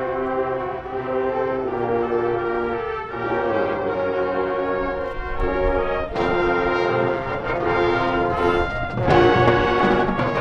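High school marching band playing: brass holding sustained chords that shift every few seconds, with low drums coming in about halfway through. The band grows louder near the end.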